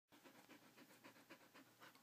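Australian Shepherd panting close up, quick and rhythmic at about four pants a second, faint.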